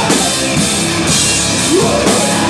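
Hardcore rock band playing live: drum kit and electric guitar, loud and dense throughout.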